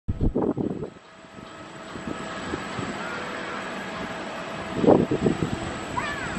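Steady distant jet-engine noise from airliners at the airport, building over the first couple of seconds and then holding. Wind buffets the microphone at the very start and again about five seconds in.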